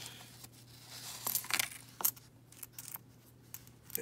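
Paper coin-roll wrapper rustling and crinkling as a roll of pennies is opened and spread out by hand, with a few light clicks of the copper coins.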